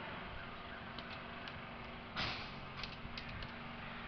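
A short scraping rustle about halfway through, followed by a few light clicks, over steady background hiss.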